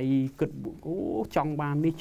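Only speech: a man talking in Khmer, drawing out a vowel at the start before carrying on.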